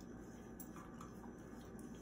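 Blue Heeler faintly licking out his empty stainless steel food bowl, with a few light ticks against the metal.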